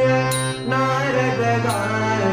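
A man singing a devotional bhajan over his own harmonium, which holds steady chords under the bending vocal line. A percussive stroke lands about a third of a second in and another just before the end.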